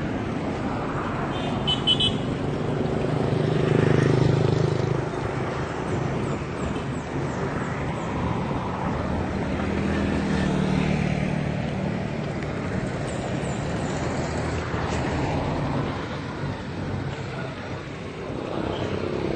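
Road traffic on a busy street: vehicle engines and tyres passing, swelling loudest about four seconds in and again around ten seconds. A brief high horn toot comes about two seconds in.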